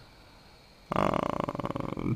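A man's drawn-out hesitation sound "eh" in a creaky, rattling voice, starting about a second in after a brief quiet pause.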